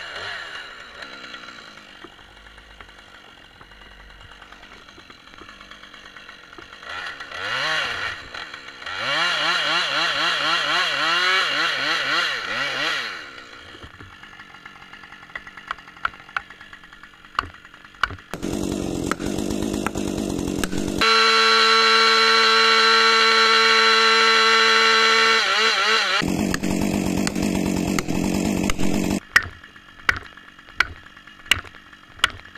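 Husqvarna 545 two-stroke chainsaw revved in bursts, its pitch rising and wavering. It then runs hard at full throttle for about ten seconds near the end, holding one steady high note in the middle of that run, before cutting off abruptly.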